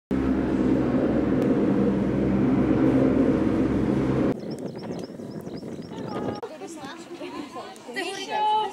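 Gondola lift station machinery humming loudly and steadily with several low tones, cutting off abruptly about four seconds in. It gives way to a quieter open-air sound with faint high ticks and distant voices near the end.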